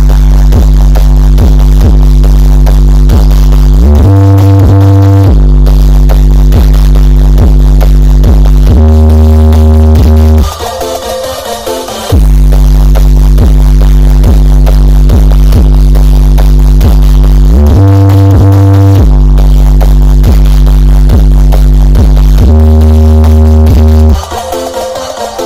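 Electronic dance music with heavy, sustained bass notes, played very loud through a wall of large subwoofer and speaker cabinets (triple-magnet 21- and 18-inch drivers). The music drops back for about a second and a half a little before the middle, then comes back at full volume.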